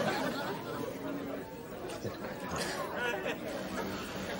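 Background chatter of many overlapping voices in a large room, none of them clear enough to make out.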